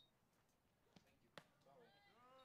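Near silence: faint outdoor ballfield ambience, with two faint clicks and, near the end, faint distant voices.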